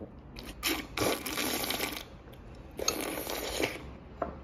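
A child slurping soup from a bowl in two long sips, each about a second long.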